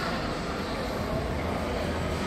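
Steady ambient noise of a public hall: an even low hum and hiss with no distinct events.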